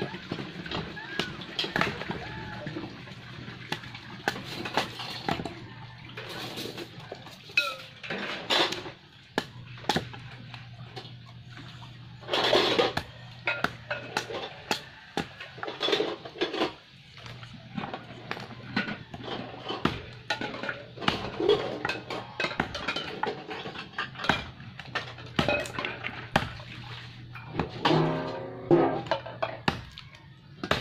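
A machete chopping and splitting thin kindling sticks against a wooden block: a long series of sharp, irregular knocks. Dishes clink in a metal basin and water splashes beside it.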